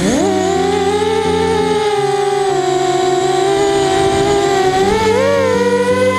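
Brushless motors of a 5-inch FPV racing quadcopter (Emax 2204 2300kv) whining as it lifts off. The pitch jumps up at the start, holds steady, then climbs again near the end as more throttle is given. Music plays underneath.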